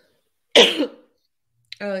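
A woman clearing her throat once, a short, sharp burst about half a second in.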